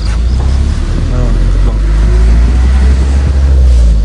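Steady low rumble of a moving Isuzu Elf minibus and the wind, heard from its roof while it drives, growing louder toward the end.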